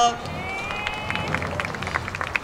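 Audience cheering: a high-pitched held scream in the first half, then scattered hand claps.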